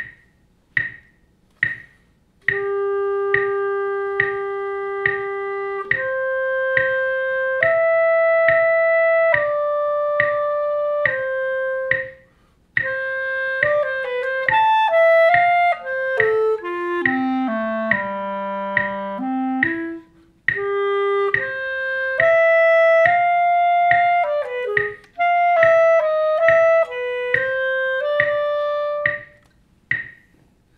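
Solo clarinet playing a slow etude line against a metronome clicking steadily at 70 beats per minute, with the eighth note getting the beat. The metronome clicks alone for about two seconds before the clarinet comes in with long held notes. In the middle the clarinet moves in quicker steps down into its low register and back up, with brief pauses for breath.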